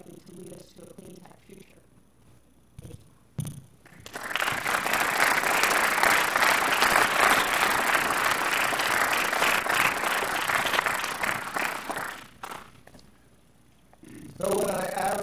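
Audience applauding: the clapping starts about four seconds in, holds for about eight seconds and dies away.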